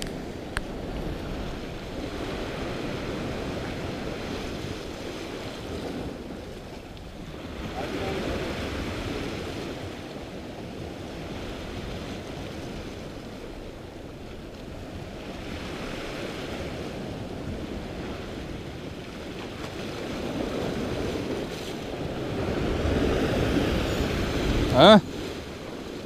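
Sea waves breaking and washing against a rocky shore, the surf swelling and easing every few seconds.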